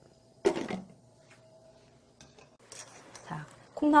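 A glass pot lid set down on a wok, one brief clatter about half a second in, followed by a faint steady hum and a few small handling noises.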